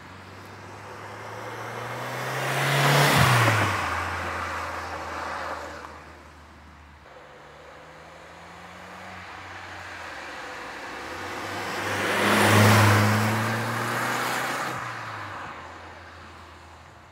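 Volkswagen Golf 4 GTI driving past twice. Its engine grows louder as it approaches and peaks as it goes by, about three seconds in and again about twelve seconds in. The engine pitch drops as it passes each time.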